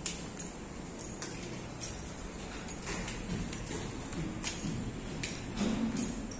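A scattered series of short, sharp clicks and knocks at uneven intervals over a steady background noise.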